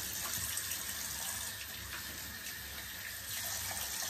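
Bathroom sink tap running steadily while hands are washed under it.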